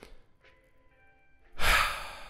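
Faint, sparse notes of soft background music, then about a second and a half in a loud sigh: a man's breath out, close to the microphone.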